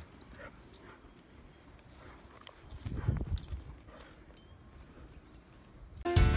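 Dogs running and playing on grass, heard faintly: small clicks and jingles, with a louder low rumble about three seconds in.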